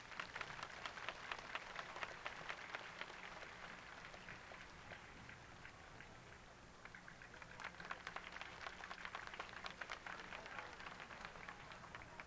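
Faint hand clapping in two waves, the first from the start to about four seconds in and the second from about seven to eleven seconds: many sharp, irregular claps.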